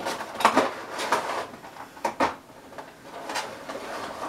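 A cardboard box and plastic tray of makeup brushes being opened and handled, with a few scattered knocks against the table and faint rustling in between.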